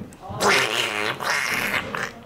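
A person's voice making a mouth sound effect: two rough, noisy bursts, each about half a second long.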